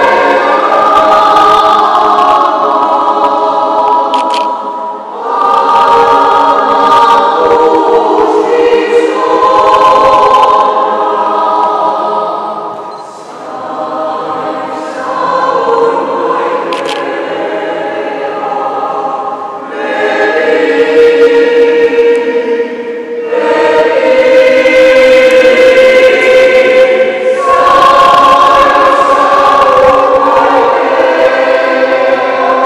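Mixed choir of men's and women's voices singing sustained chords in several parts, in phrases a few seconds long. The singing turns softer a little before halfway, then swells to louder, fuller chords over the last third.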